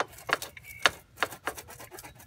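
Sharp metallic clicks and clinks, about five in two seconds, as the rear section of a Kawasaki ZRX1100's exhaust is worked loose and pulled out as one unit.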